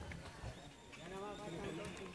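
Indistinct voices talking in the background, with a few light clicks.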